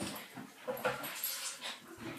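A small dog whimpering, a few short, faint whines.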